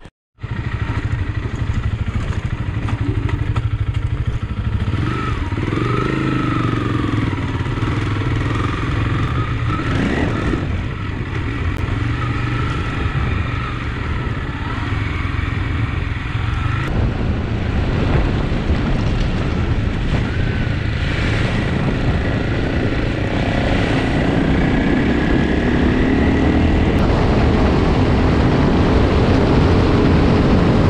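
Honda CRF300L Rally's single-cylinder engine running while riding on dirt and gravel trails, heard from on the bike with heavy wind noise on the microphone. The engine note rises over the last several seconds as it accelerates.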